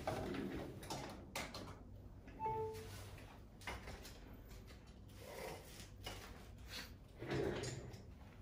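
Faint scattered clicks, knocks and rustles of handling, with a short falling two-note electronic beep about two and a half seconds in and a duller bump near the end.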